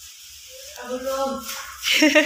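Faint high-pitched voices in a small tiled room. A louder voice starts speaking just before the end.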